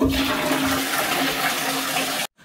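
Toilet flushing: a rush of water that starts suddenly and runs on at a steady level, with a steady low tone under it.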